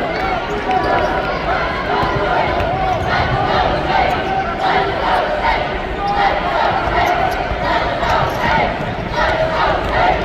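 Basketball game arena sound: a crowd of many voices talking and calling out while play goes on, with a ball bouncing on the hardwood court.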